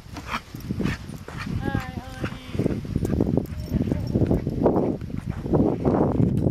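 Footsteps crunching on sand in an uneven walking rhythm, with a short wavering vocal sound about two seconds in.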